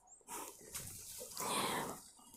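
Saree fabric rustling and swishing as a saree is lifted and moved by hand, louder about one and a half seconds in.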